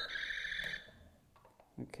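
Electronic sound effect from a talking Buzz Lightyear action figure: a held electronic tone that cuts off under a second in, following a run of quick beeps.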